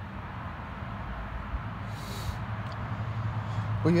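Steady low background rumble with a low hum, and a short hiss about two seconds in.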